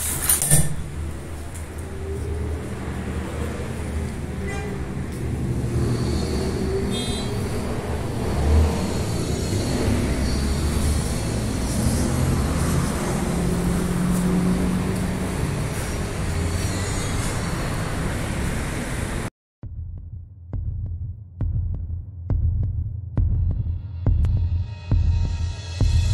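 A steady low rumble of road traffic for most of the stretch. After a sudden cut near the end, sparse low throbbing pulses like a heartbeat come in, from suspense background music.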